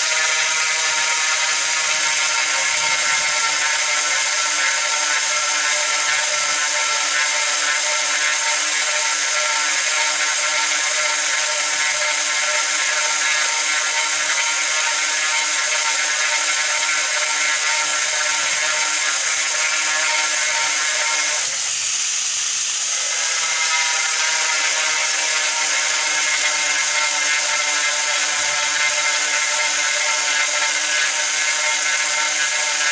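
Angle grinder running at speed with a dry drilling bit grinding into hard ceramic tile, a steady high motor whine over a gritty hiss. Its pitch briefly wavers about two-thirds of the way through, then steadies.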